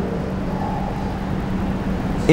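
Steady low background rumble with a constant low hum underneath, heard in a pause between spoken phrases.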